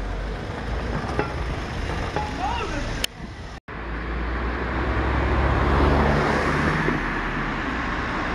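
Street traffic noise. After a short break about three and a half seconds in, a car's engine and tyres swell to their loudest about six seconds in as it passes, then ease off.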